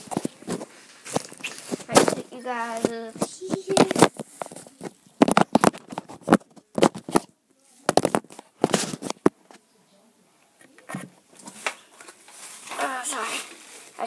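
Irregular knocks, clicks and rustling from a phone being handled and moved about close to its microphone. A boy's voice briefly sings or speaks twice, early on and near the end.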